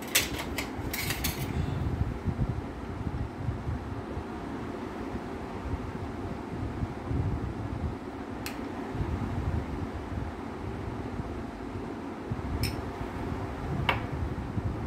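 A steady whir of room noise, like a running electric fan, with a quick cluster of clicks in the first second and a half and single clicks a little past the middle and near the end.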